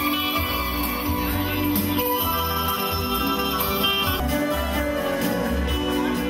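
Live band playing an instrumental break in a Korça serenade, with guitar prominent and no singing.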